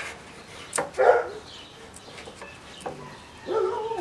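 A dog barking: one short, loud bark about a second in and a longer, drawn-out one near the end.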